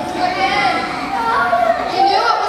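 Many young children's voices talking over one another, a loud jumble of chatter.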